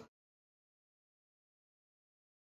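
Silence: the crowd chatter cuts off right at the start and the sound track is then empty.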